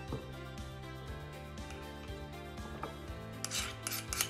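Soft background music with held tones. A metal spoon scrapes solid coconut oil off a small dish into a jug, making light scrapes and clicks, with a brief louder scrape near the end.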